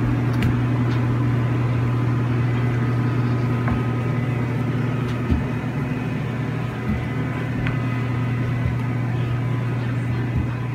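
A steady low mechanical hum, with a few faint, irregular knocks from the cane and footsteps on the floor.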